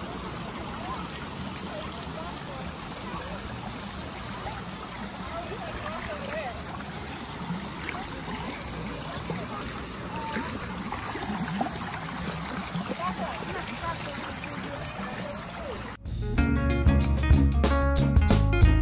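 Steady outdoor rushing noise with faint voices in the background. About sixteen seconds in it cuts off sharply to louder background music with guitar and drums.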